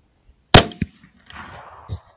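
A single rifle shot about half a second in, followed a quarter second later by a second, weaker crack, then a trailing echo and a thump near the end.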